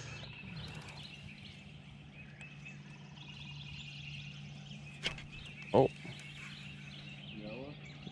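Small birds chirping steadily in the background over a low steady hum. There is a click about five seconds in, and just before six seconds a single short, loud bird call.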